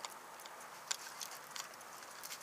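Faint clicks and taps from a plastic snap-release clip on a knife scabbard being handled, with one sharper click about a second in.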